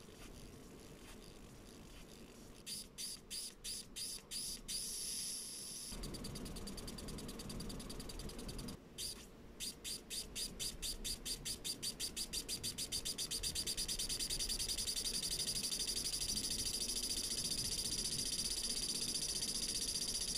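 Sharp electrical ticking from a high-voltage electrospray at a plastic emitter tip: a few irregular clicks about three seconds in, then after a brief pause a fast run of clicks that speeds up into a steady rapid ticking.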